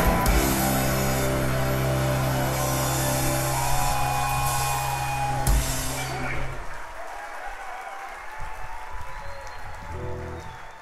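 A live rock band's final chord ringing out on held electric guitars and bass, with a last sharp drum and cymbal hit about five and a half seconds in. The chord then dies away into crowd cheering and applause.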